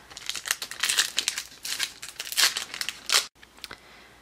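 Foil Pokémon booster pack wrapper crinkling in irregular crackles as it is handled and torn open; the sound drops out for an instant a little after three seconds in.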